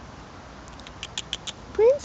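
Northern Inuit puppies squeaking: a quick run of five or six short, high squeaks, then near the end a louder squeal that rises in pitch.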